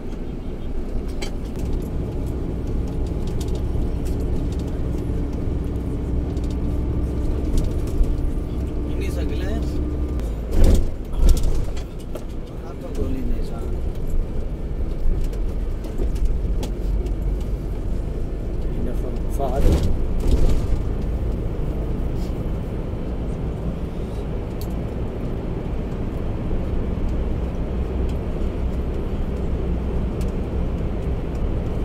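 Road noise heard from inside a moving bus: a steady low rumble of engine and tyres in traffic and through a tunnel, with two brief louder bumps of noise about ten and twenty seconds in.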